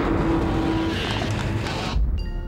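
Staged car crash sound effect. A loud burst of noise starts suddenly, with a held squeal through the first second and a heavier low thump near the end, as the car's rear is struck.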